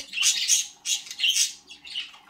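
Pet budgerigars chirping and chattering in quick high-pitched bursts, two main runs of about half a second each and another starting near the end.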